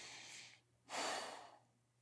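A man breathing close to the microphone: two audible breaths, the second, about a second in, louder than the first.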